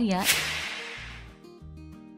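A whoosh transition sound effect comes a moment in: a sharp hiss that fades away over about a second and a half. Soft background music follows, with held notes and a gentle low beat.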